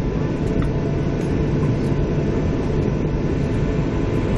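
Jet airliner cabin noise while taxiing after landing: a steady low rumble with a few faint steady hums, heard from a seat by the wing.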